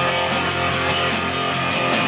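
Live rock band playing: electric guitar over a drum kit keeping a steady beat.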